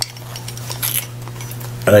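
A few faint clicks and clinks of a metal split bolt connector and wrench being handled, with a short scrape about a second in, over a steady low hum.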